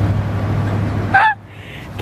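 A steady low rumble that stops about a second in, followed at once by one short, rising, high-pitched cry.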